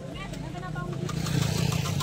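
Small motorbike engine running, a steady low hum that grows slightly louder, with faint voices behind it.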